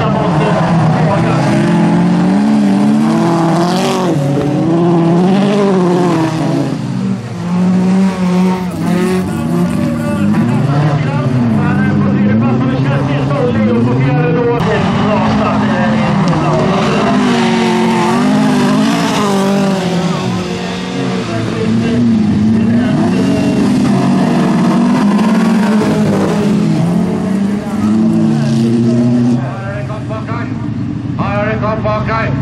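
Several bilcross racing cars' engines revving hard at once, their notes rising and falling through gear changes as the pack drives flat out around the track.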